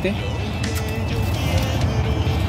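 Background music with a steady low beat and a held note in the middle.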